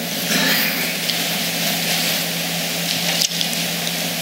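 Many Bible pages being leafed through at once, a steady papery rustle from a congregation finding a passage.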